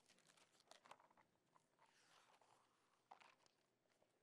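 Faint rustling and crinkling of thin Bible pages being leafed through, in short scattered bursts with a slightly louder rustle about a second in and again just past three seconds.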